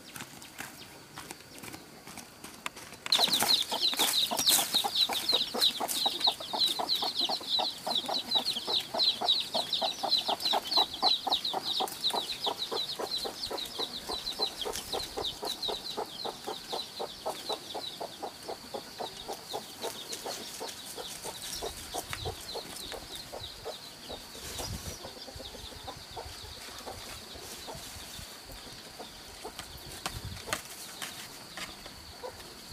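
Rapid, evenly repeated pulsing animal calls that start suddenly a few seconds in, then fade and thin out, leaving a steady high-pitched tone.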